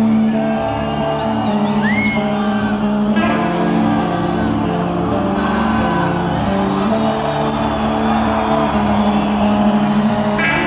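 Heavy metal band playing live: distorted electric guitar and bass guitar holding sustained notes that change every second or so, with no singing.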